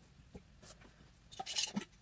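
Quiet handling sounds of craft supplies on a table: a few faint taps as a plastic paint bottle is set down, then a short cluster of clicks near the end as a glass mason jar's metal screw lid is twisted off.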